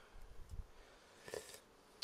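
Near silence, with a few faint, brief rustles.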